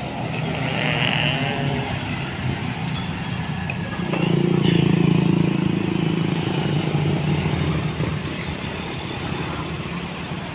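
Road traffic passing close by: the engines of a heavy flatbed truck, cars and a motorcycle, with an engine drone that swells loudest about four to six seconds in.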